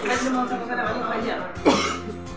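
Indistinct voices of several people talking in a room, with a short, loud vocal burst, sweeping down in pitch, near the end.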